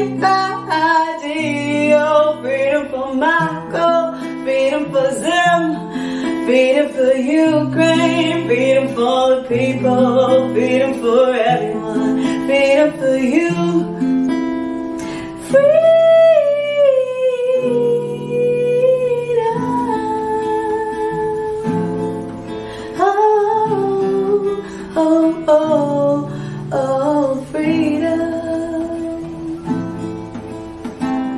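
A woman singing to her own classical guitar accompaniment. About halfway through she holds one long note that falls slightly in pitch. Near the end it grows quieter as the guitar carries on.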